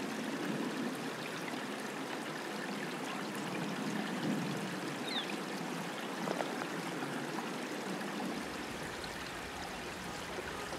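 Shallow creek water running and trickling steadily.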